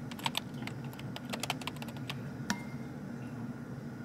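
Wooden chopsticks clicking lightly and irregularly against ceramic plates and a bowl while picking up and placing broccoli, over a steady low hum.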